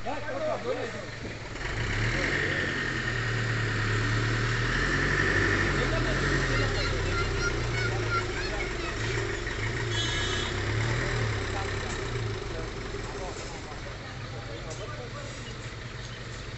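A heavily loaded truck's diesel engine running as the truck pulls away under load. The engine note wavers and swells about a second and a half in, then fades in the last few seconds as the truck moves off.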